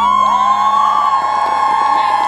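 Concert audience cheering with many high screams held together in a loud, sustained wall of voices, while the last note of the music fades out early on.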